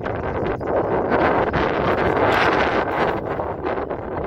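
Wind buffeting the microphone: a loud, steady rushing noise with no distinct strokes or tones.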